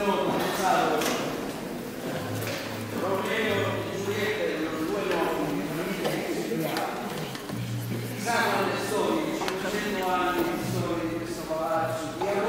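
Many young voices talking at once in a large, echoing hall, with a low steady hum coming in twice.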